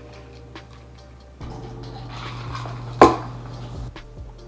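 A single sharp clack about three seconds in, tableware knocked against a wooden table, with a few faint clicks before it over a low steady hum.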